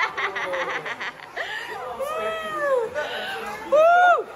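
Laughter, then several drawn-out vocal exclamations that rise and fall in pitch, the loudest near the end.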